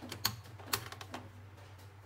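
Hard plastic casing of a hair dryer clicking and tapping as it is handled and turned over, a handful of irregular sharp clicks; the dryer is not running.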